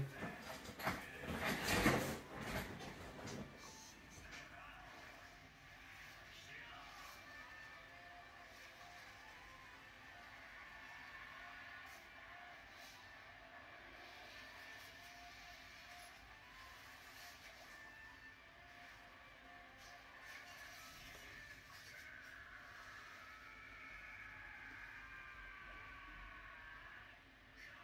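Anime soundtrack played back low: a short shouted line of dialogue in the first three seconds, then a faint bed of soft sustained tones for the rest.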